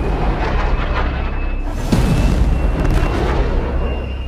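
Film-trailer soundtrack: dramatic music over the rushing roar of fighter jets in flight, with deep booming hits. A sharp, heavy hit lands about two seconds in.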